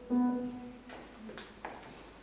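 A single steady pitched note, sounded for about half a second at the start to give the choir its starting pitch, followed by faint rustles and clicks.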